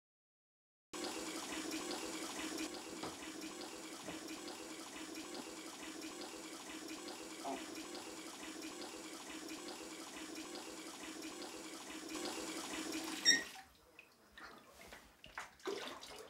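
Water running from a tap into a bathtub, a steady rushing that stops abruptly near the end, followed by a few faint knocks.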